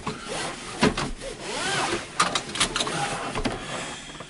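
Car seat belt being pulled across and fastened: the webbing rubs and slides, with several knocks and clicks and a few brief squeaks.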